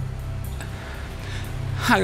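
Soft background music with a low, sustained drone under faint held notes, and a breathy gasp or exhale around the middle. A voice starts right at the end.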